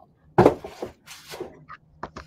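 Craft tools and small objects clattering on a work table: a sharp knock about half a second in, then lighter knocks and rustling.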